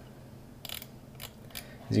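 Computer mouse scroll wheel clicking in a few short ratchety runs of ticks as a web page is scrolled up.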